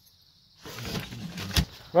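Near silence at first, then from about half a second in a steady hiss of outdoor background noise, with one sharp knock near the end just before a man starts speaking.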